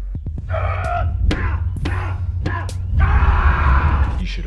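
A man screaming in rage over a low droning music score: a shorter outburst about half a second in, then a louder, longer scream over the last second.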